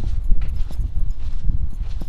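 Footsteps on sandy dirt ground at an uneven walking pace, with wind rumbling on the microphone.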